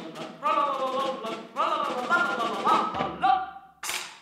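A woman's voice declaiming theatrically in drawn-out, sliding tones, half spoken and half sung, over light percussive taps. Just before the end comes one sharp clack, then the sound drops away.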